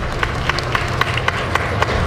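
Honda ASIMO humanoid robot's footsteps on the stage, sharp taps about four a second, over the rumble of a crowd in a large hall.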